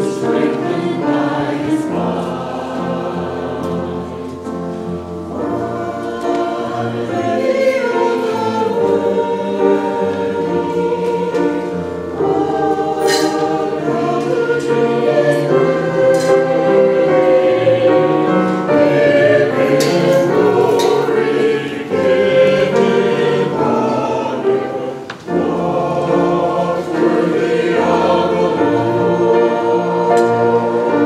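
Small mixed church choir of men and women singing an anthem in parts, with a brief break between phrases near the end.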